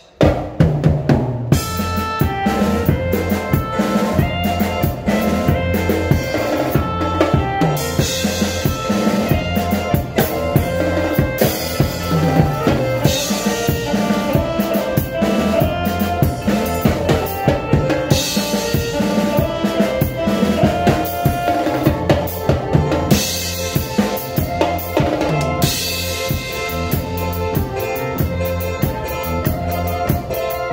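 A drum kit played in a steady groove of bass drum, snare and rimshots, with stretches of ringing cymbals, over band instruments holding pitched notes. The playing comes in suddenly at the start.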